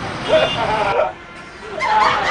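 Speech over street noise, with a brief sharp drop in level just after the middle.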